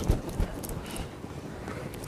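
Two soft, low thumps close together near the start, then steady room tone.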